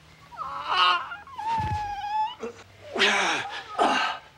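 A man's strained wailing cries and groans while being wrestled to the floor: several short cries that fall in pitch, and one held high whine about a second and a half in.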